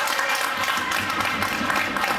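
Spectators clapping, with crowd chatter mixed in.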